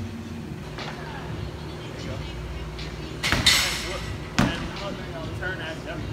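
Steady low room hum with faint voices, broken by a short loud rushing noise a little over three seconds in and a sharp thump about a second later.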